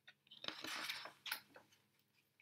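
A page of a large paperback picture book being turned by hand: a brief, faint papery rustle with a sharper flick near its end.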